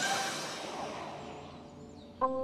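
Cartoon whoosh sound effect dying away: a hiss that fades steadily to quiet.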